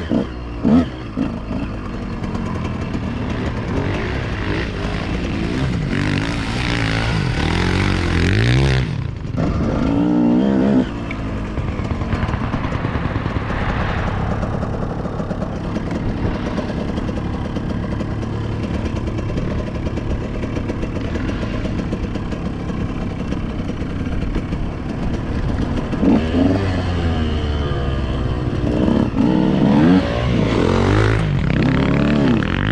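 KTM 125 SX two-stroke motocross engine heard from the rider's own bike, revving up and falling back through the gears while riding. The revs climb near the start, again about ten seconds in and twice near the end, with a brief drop in engine sound about nine seconds in.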